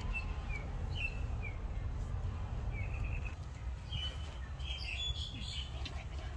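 Small bird chirping in short, quick downward notes repeated every half second or so, with a busier run of higher chirps about four to five seconds in, over a steady low rumble.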